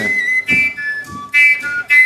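A short phrase of high, pure whistle-like notes stepping downward in pitch, with a brief noisy burst in the middle.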